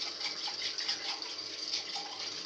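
A steady hiss with a faint low hum underneath.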